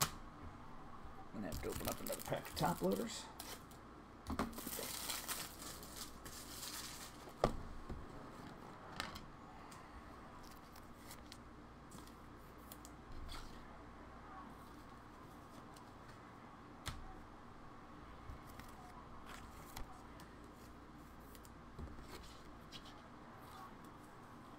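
Foil trading-card pack wrappers being torn open and crinkled, in two bursts during the first seven seconds. After that come scattered light clicks and taps.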